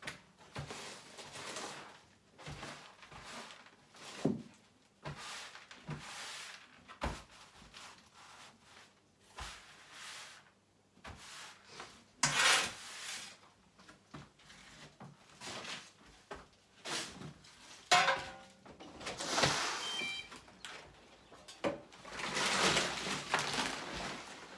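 A stiff broom sweeping rubble and dust across a concrete floor in irregular strokes, mixed with sharp knocks and scrapes of a shovel being handled.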